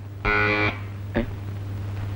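A single short electric buzz, steady in pitch and about half a second long, followed by a brief click, over a low steady hum.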